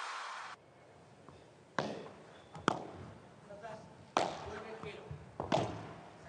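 A padel ball being struck back and forth in a rally: four sharp hits about a second or a second and a half apart, each echoing briefly in an indoor arena. The tail of intro music cuts out in the first half second.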